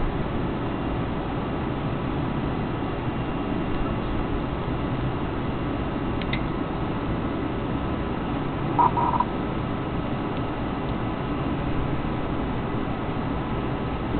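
Steady rumbling background noise with a faint hum. There is a faint click about six seconds in and a brief higher sound about nine seconds in.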